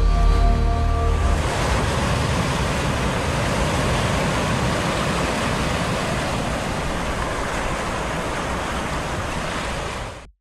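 Sound design of a TV station logo ident: held musical notes that stop about a second in, then a steady wash of noise that fades slightly near the end.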